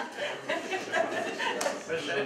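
Indistinct talk from several people at once, with a little light laughter.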